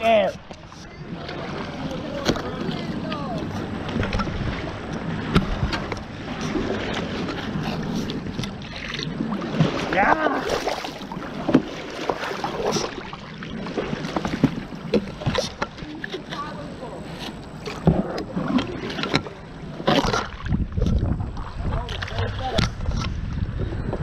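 A 212cc single-cylinder engine running a motorized kayak under way, with water rushing past the hull.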